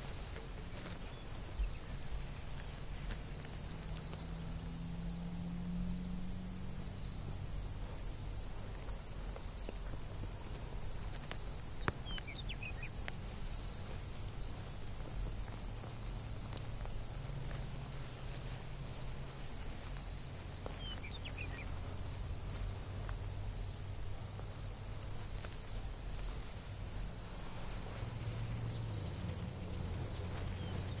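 Crickets chirping steadily, about two high chirps a second, with a faster trill joining in at times, over a low steady rumble.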